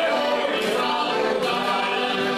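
Three heligonkas, Slovak diatonic button accordions, playing a folk tune together while several men's voices sing along.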